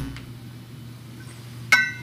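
A pause in speech with low, quiet room noise, broken near the end by one short, ringing clink.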